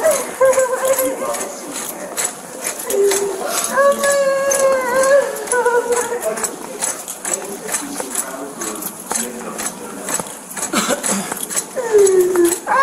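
A woman moaning and wailing in several long, wavering, high-pitched cries without clear words, with faint clicks and rattles underneath.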